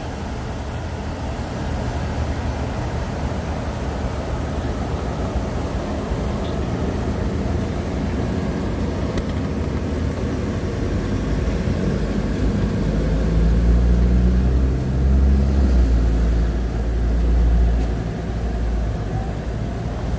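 Steady low rumble of road traffic, swelling into a deeper, louder engine drone for several seconds past the middle.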